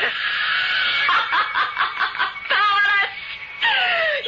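A woman laughing, the acted taunting laugh of a vampire in a radio drama, over a held note of background music.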